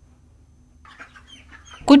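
Faint, short high cheeps of broiler chickens starting about a second in, over a low steady hum.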